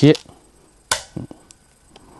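A Go stone is set down on a wooden Go board with one sharp click about a second in, followed by a few fainter knocks.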